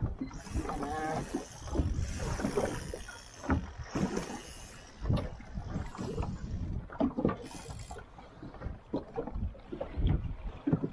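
Waves slapping against the hull of a small boat rocking on a choppy sea: irregular knocks and low thuds, with spells of splashing hiss.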